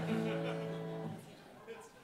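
Acoustic guitar chord strummed once and left to ring, dying away a little over a second in.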